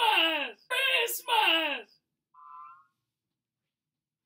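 A man yelling without words in three long cries, each falling in pitch, stopping about two seconds in; a brief faint tone follows, then silence.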